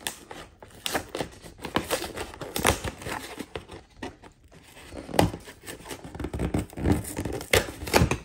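Cardboard and plastic packaging of a Pokémon TCG Shining Fates collector box being opened and handled: tearing and crinkling, with irregular clicks and knocks, the loudest a little after halfway and near the end.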